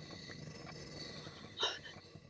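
A quiet pause between spoken lines: faint steady background hiss with thin high tones, and one short soft sound near the end.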